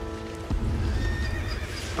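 A horse vocalising, starting suddenly about half a second in, over sustained background music chords.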